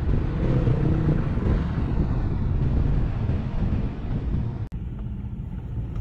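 A car moving off slowly: low engine and road rumble with wind buffeting the microphone. Near the end it drops abruptly to a quieter, steadier rumble.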